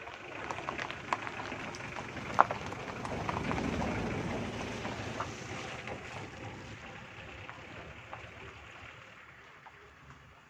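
Mitsubishi pickup truck driving past on a gravel road, its tyres crunching and crackling over the loose stones, with one sharp click a little over two seconds in. The sound swells as the truck passes at about four seconds and then fades away.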